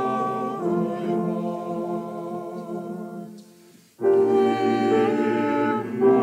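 Small church choir singing a slow hymn in parts on long held chords. The chord dies away just before four seconds in, and the next phrase starts straight after.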